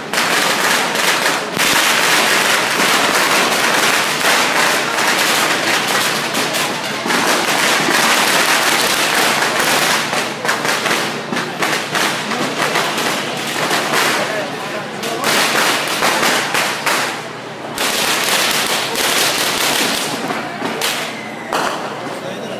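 Strings of firecrackers going off in a loud, dense, continuous crackle of rapid bangs, with a few short lulls.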